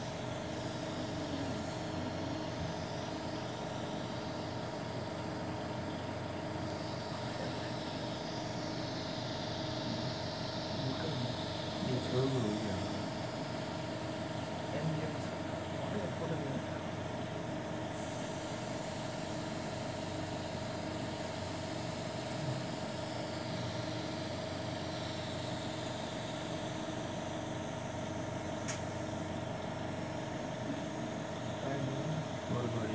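Steady machine hum made of several held tones, unchanging throughout, with faint voices rising briefly a few times.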